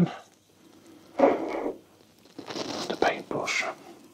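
Quiet, indistinct talking in two short stretches, with low room noise between them.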